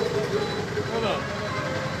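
Indistinct voices of a crowd over a steady background hubbub, with one voice briefly louder and falling in pitch about a second in.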